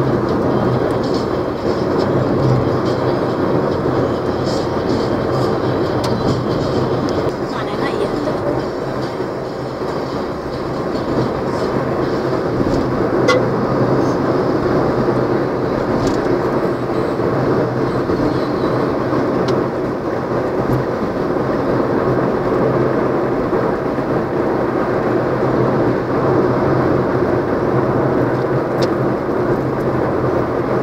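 Inside a bus driving at speed on a highway: a steady drone of engine and road noise with a low hum underneath.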